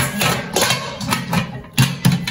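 Stacked metal cooking pots and their glass lids clinking and knocking together as they are handled, in irregular knocks with a sharper clank near the end, under a woman's humming.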